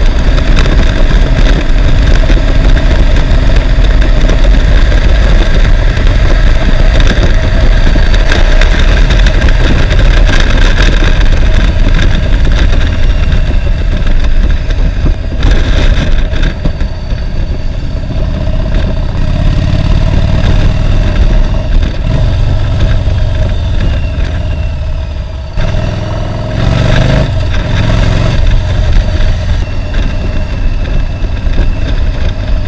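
Cruiser motorcycle underway: wind rushing over the microphone at speed, with the engine running beneath. The noise eases in the middle as the bike slows through a turn, then the engine revs up as it pulls away near the end.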